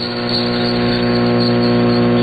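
Steady buzzing hum with many evenly spaced overtones, carried on a shortwave AM broadcast signal and heard through the receiver's narrow audio band.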